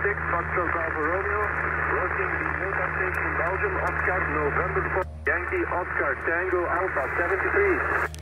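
Voice of a distant station received on 20-metre single-sideband and heard through the transceiver's speaker: thin, narrow-band speech with a steady low hum underneath and a short break about five seconds in.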